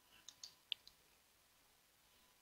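Near silence, with a few faint, short clicks in the first second.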